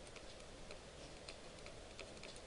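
Faint, irregular ticks of a stylus tapping and moving on a tablet surface while handwriting is written.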